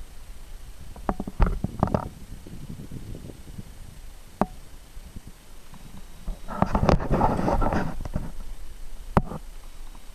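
A kayak being worked into shallow water among reeds and lily pads: a quick clatter of hard knocks about a second in, a single knock midway, then a longer scraping rush as the hull pushes through the vegetation, and one more knock near the end.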